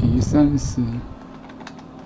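A computer keyboard being typed on, with a scattering of separate key clicks in the second half, after a brief muttered voice in the first second.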